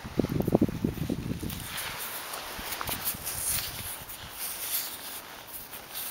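Handling noise and rustling as a hand reaches into dry soil and corn stubble and picks up a small stone arrowhead: a cluster of low knocks and rubbing in the first second, then faint scattered clicks and rustles.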